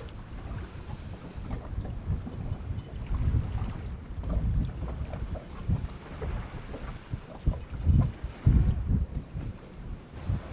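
Wind buffeting the microphone on the deck of a sailing yacht, rising and falling in irregular gusts.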